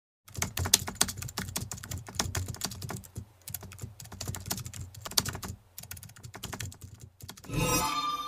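Keyboard-typing sound effect: a fast, irregular run of key clicks. Near the end comes a louder hit with a ringing tone that fades.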